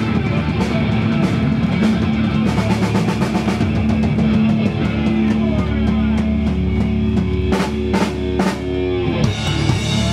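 Punk rock band playing live: distorted electric guitars, bass and drum kit with a fast cymbal-driven beat. About halfway through the band moves to a held, ringing chord, punctuated by three heavy drum hits near the end.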